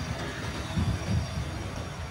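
Night street ambience: a steady low rumble of traffic noise, with two low thumps a little under a second and just over a second in.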